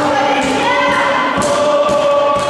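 A group of voices chanting in unison, holding sustained notes, with a couple of sharp impacts in the second half.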